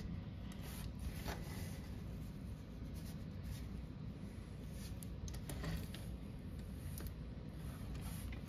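Faint, scattered clicks and light scraping of small toy robot parts being handled and pressed onto pegs.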